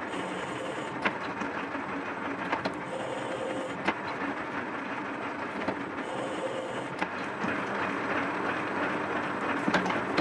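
Hendey lathe running in back gear while a single-point tool cuts a 12 TPI thread, the carriage driven by the lead screw through the engaged half nuts: a steady mechanical clatter of gears and feed with irregular sharp clicks. A faint whine comes and goes twice.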